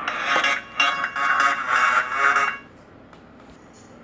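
A video's audio playing through a smartphone's built-in loudspeaker, sounding small and tinny, cut off about two and a half seconds in. The sound still comes from the speaker because the phone does not detect the plugged-in USB Type-C headphone adapter.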